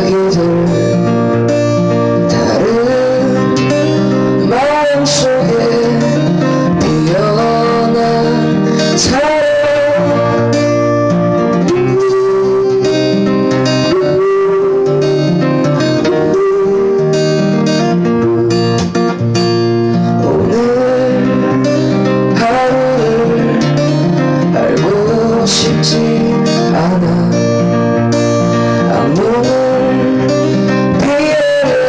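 Acoustic guitar strummed steadily in a live solo performance, with a man singing over it in sliding, drawn-out phrases.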